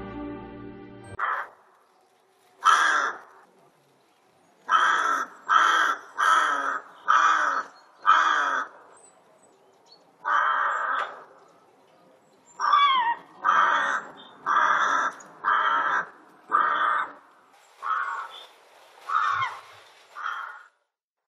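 Music cuts off about a second in, then a rook gives a long series of harsh caws, about one a second with a few longer pauses.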